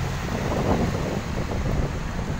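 Wind buffeting the phone's microphone, an uneven rumble that swells about half a second in, over low street noise.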